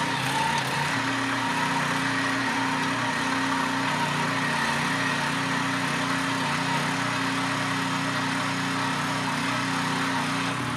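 Small engine of a walk-behind tractor (motoblock) running steadily, with an even, unchanging tone.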